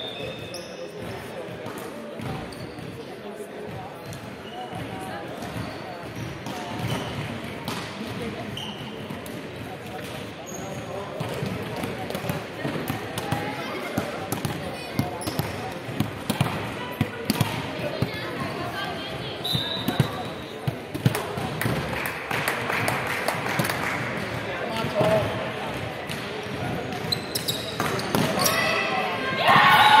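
Indoor volleyball play in a large hall: sharp ball hits and footfalls on the wooden court under players' voices calling out. In the last two seconds a loud burst of shouting and cheering breaks out as a rally ends.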